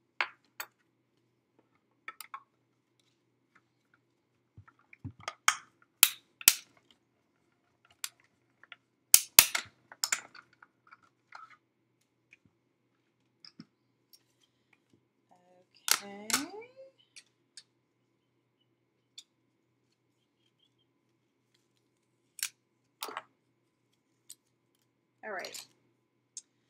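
Sharp clicks and clacks of clear acrylic cutting plates and metal dies being handled and pulled from a hand-cranked die-cutting machine. The loudest knocks come in clusters about five to six seconds and nine to ten seconds in, with a short vocal sound about sixteen seconds in.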